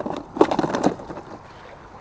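A quick, irregular run of clicks and knocks through the first second as fishing gear is handled by hand, then a steady faint hiss.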